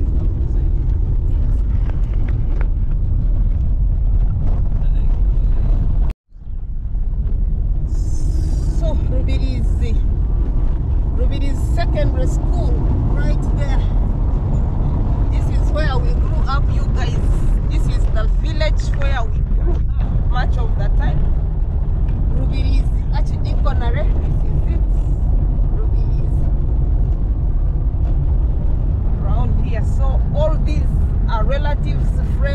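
Car driving on a dirt road, heard from inside the cabin as a steady low rumble of engine and tyres. It cuts out abruptly for a moment about six seconds in, and from a couple of seconds later voices talk over the rumble.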